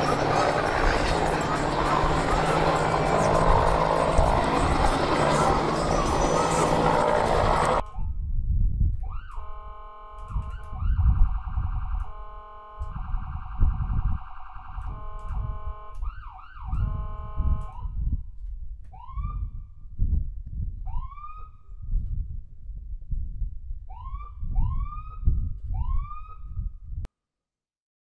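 A loud, even rushing noise for about eight seconds, then an emergency siren: steady alternating tones for about ten seconds, followed by five short rising whoops, all over low thumps.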